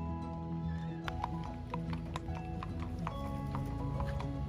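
Hooves clip-clopping on brick paving as an Icelandic horse is ridden at a walk, starting about a second in, over background music.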